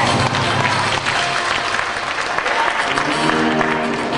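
Audience applauding over the routine's backing music; the music thins out after about a second and comes back near the end.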